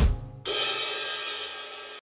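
Short musical sting: a drum hit with a low thump, then about half a second later a cymbal crash that rings and slowly fades before being cut off abruptly.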